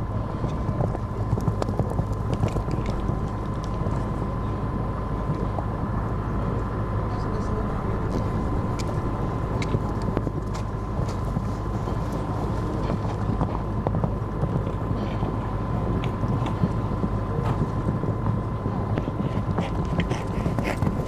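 A horse cantering and jumping on a sand arena: soft, scattered hoofbeats under a steady low rumble of wind on the microphone, with a steady high-pitched tone over it.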